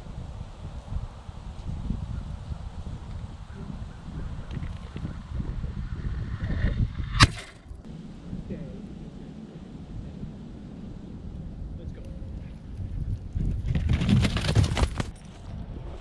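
Wind buffeting an outdoor camera microphone, a low rumble throughout, with a single sharp click about seven seconds in and a louder rush of noise near the end.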